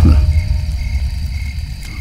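A low, steady rumble that slowly fades.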